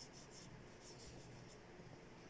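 Faint rubbing: a fingertip rubbing reflective glitter effect powder into the tacky inhibition layer of a gel-coated nail tip, in several quick, light strokes that die away about one and a half seconds in.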